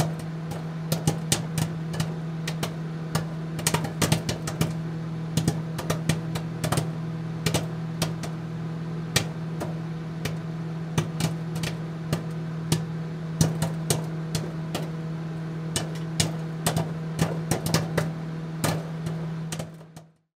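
A steady low hum with irregular crackling clicks scattered throughout, fading out at the very end.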